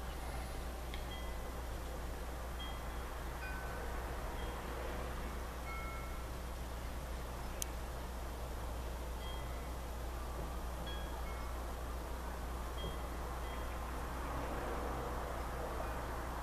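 Faint, short high ringing tones at several different pitches, sounding now and then over a steady low hum and background hiss, with a single sharp click about halfway through.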